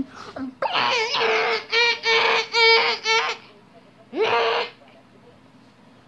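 Guinea pig squealing: a string of short, high repeated squeals, then one more squeal after a brief pause.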